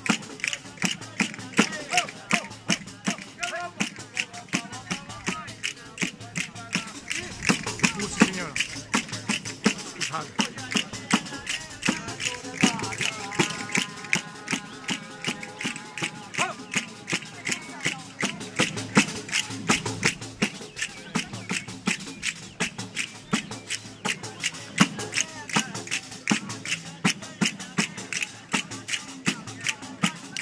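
Tammurriata folk music: wooden castanets clicking in a fast, even beat, with the steady pulse and jingles of a tammorra frame drum. A voice holds a sung line around the middle, over crowd chatter.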